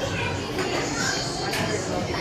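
Indistinct voices and chatter from people around the hitting bays, with no club strike heard.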